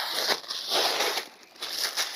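Brown packing paper and cardboard crinkling and rustling as a wrapped stove is pulled out of its box, in several bursts with a short lull about midway.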